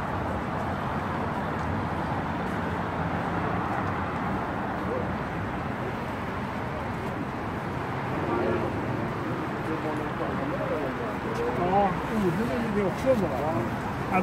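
Steady hum of city street traffic. From about eight seconds in, people's voices talk close by, louder toward the end.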